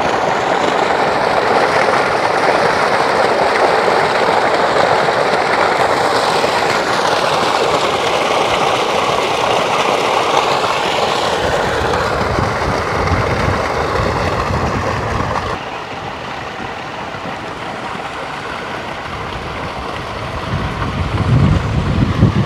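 Water from an irrigation pump's outlet pipe gushing into a concrete tank and spilling over its lip: a loud, even rush. About two-thirds of the way through it drops suddenly to a quieter rush, with low rumbling beneath it.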